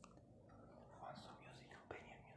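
Near silence with faint whispering in the second half and a short click near the end.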